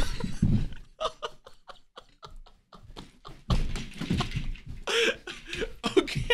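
Heavy thumps of people scrambling and landing on a carpeted floor, one at the start and a heavier one about three and a half seconds in, with breathless laughter in short, fading pulses between them and again near the end.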